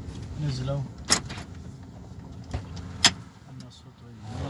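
Inside a moving car: a low road and engine rumble with a brief voice, and two sharp clicks about two seconds apart.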